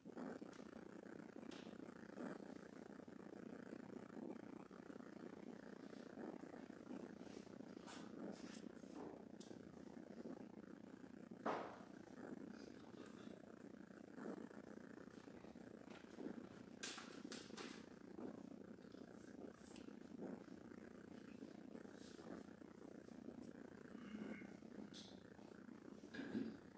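Near silence: room tone, a steady low hum with scattered faint clicks and one louder knock about halfway through.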